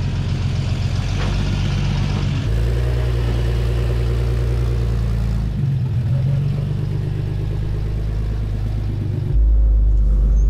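Jeep Cherokee XJ engine running steadily at low revs as it crawls down a steep slickrock wall. Near the end the hum becomes louder and deeper, heard from inside the cab.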